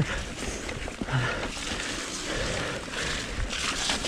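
Mountain bike rolling fast down a dirt forest singletrack: a steady rough rush of tyre and trail noise with low rumble, small knocks and rattles from the bike over the bumps, and wind on the microphone.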